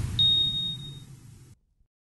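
Logo sting sound effect: a single bright, high ding about a fifth of a second in that rings out for about a second over a fading low rumble. All sound cuts off abruptly about three-quarters of the way through.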